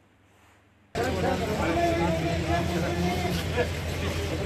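Near silence for the first second, then on-location sound cuts in abruptly: a vehicle engine idling with a steady low hum, under a crowd of people talking.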